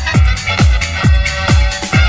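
Chicago house music from a continuous DJ mix: a four-on-the-floor kick drum about twice a second, each kick dropping quickly in pitch, under held synth tones and high percussion.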